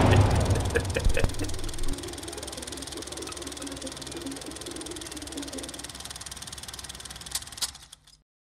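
Horror-trailer sound design: a deep rumble dying away over the first two seconds, with a knock about a second in, then a quieter, steady mechanical drone, with two clicks just before it cuts off.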